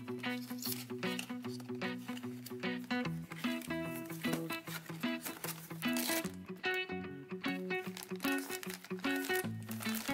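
Soft background music with a run of steady notes, over the crinkling and tearing of a plastic blind-box bag being opened by hand, most noticeable about six seconds in.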